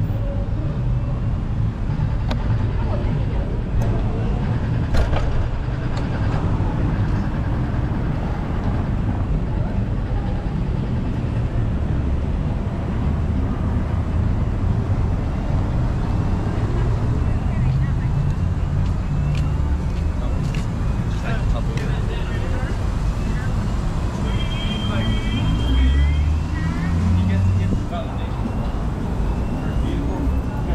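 City street ambience heard from a moving bicycle: a steady low rumble of wind and road noise with car traffic, and voices of people on the street. Near the end come a high steady tone and several short, high chirping calls.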